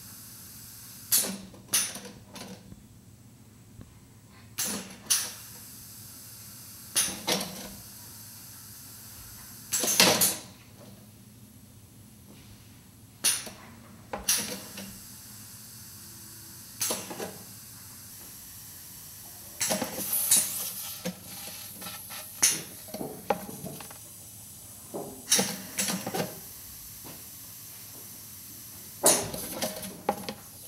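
Pneumatic strikers hammering the ceramic casting shell on a bronze-cast rock, chipping it away at random. Irregular sharp knocks, roughly one every two seconds, each with a short hiss of air from the cylinders.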